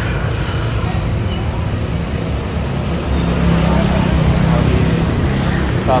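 Road traffic: cars and motor scooters running past in slow, busy street traffic. A steadier engine hum swells louder about halfway through.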